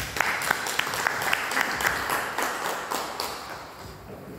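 Audience applauding at the end of a talk: a steady patter of many hands clapping that thins out and fades away in the last second.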